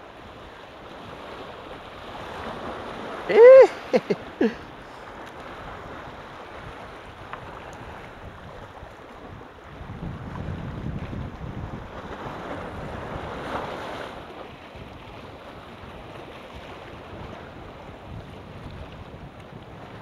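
Sea surf washing against a rock jetty, with wind buffeting the microphone; the wash swells louder between about ten and fourteen seconds in. About three and a half seconds in, a short, loud 'uh!'-like vocal exclamation rises and falls in pitch, followed by two brief shorter sounds.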